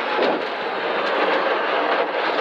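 Rally car engine running with loud road and tyre noise, heard from inside its roll-caged cabin as it takes a tight right hairpin.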